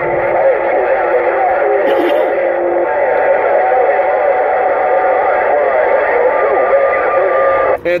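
Overlapping, garbled voices of distant stations received on CB channel 6 (27.025 MHz) and heard through the speaker of a Uniden Grant XL radio. The audio is thin, with no deep bass or high treble. It cuts off suddenly just before the end as the set is keyed to transmit.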